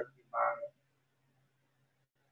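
A brief vocal sound from a person's voice, a short single syllable about half a second in. After it comes a faint steady low hum.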